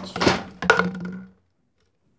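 Clinks and knocks of a glass drinking glass being handled, mixed with rushing handling noise, cutting off suddenly about a second and a half in.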